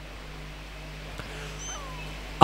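A pause in speech: a low steady hum from the sound system, with a few faint, brief high chirps and squeaks behind it.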